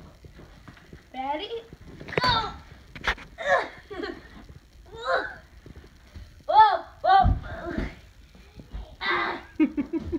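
Short bursts of voices, with two dull thumps a little past halfway, from a child and a heavy packed seabag going down onto a carpeted floor.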